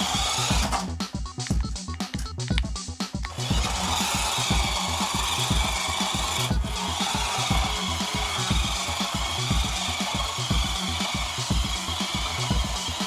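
Background music with a steady beat, over a 1:18-scale toy RC truck driving across a hard floor. For the first three seconds or so there are quick clicks and rattles, then its small electric motor and gears run with a steady whine.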